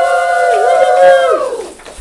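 Voices giving a loud, long held cheer, steady in pitch for about a second and a half before tailing off.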